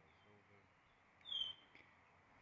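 A single short, high chirp that falls slightly in pitch, about a second in, over faint steady hiss.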